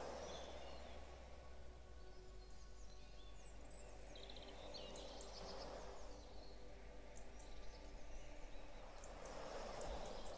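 Faint recorded birdsong, scattered chirps and short trills, over a soft wash of ocean waves on a shore that swells near the start and again near the end.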